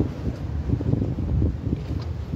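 Wind buffeting the microphone, an uneven low rumble, with irregular knocks from the phone being handled.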